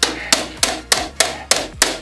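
A hammer striking a VCR's casing repeatedly, seven quick, even blows at about three a second, hard enough to break the machine.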